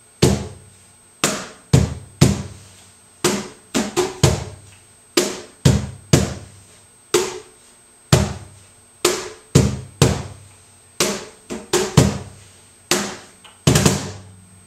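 Cajon played by hand in a slow tientos compás: single and paired strikes about half a second to a second apart, mixing deep bass tones from the centre of the front face with sharper slaps. A quick run of three strokes comes near the end, and the last strokes are bass hits.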